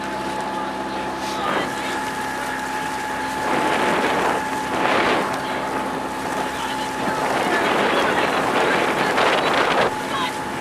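Outboard motor of a coaching launch running steadily as it keeps pace with racing rowing shells. Wind buffets the microphone and water rushes past, swelling louder twice: a few seconds in and again near the end.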